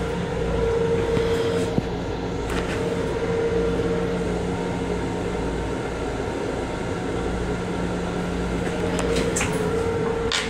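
Steady running noise of a Long Island Rail Road M7 electric railcar heard from inside its small restroom: a low rumble with a constant hum over it, and a single sharp click about two seconds in.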